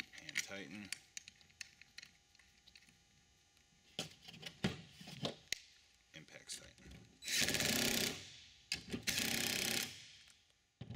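A cordless impact wrench runs twice in short bursts, about a second each, near the end, tightening two M10 bolts that hold an EG adapter to a tool plate. Before that there are a few light clicks and knocks of metal parts being handled.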